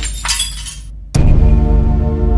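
Party dance music with the sound of a glass bottle shattering in the first second. The music cuts out briefly, then drops back in with a sharp hit and heavy bass just over a second in.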